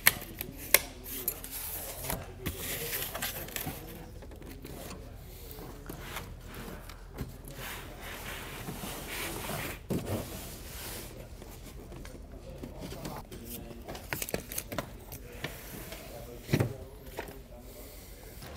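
Rooftop RV air conditioner unit being shoved and dragged across a sheet of cardboard on the roof, with irregular scraping and rubbing and a few sharp knocks as it comes free of the roof opening.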